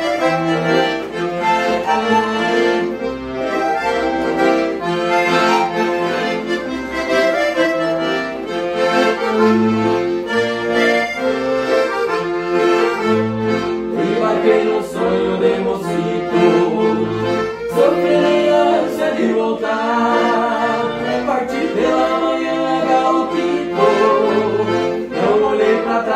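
Two piano accordions playing an instrumental duet of a gaúcho-style song, a chordal melody over a steady pattern of separate bass notes, continuous throughout.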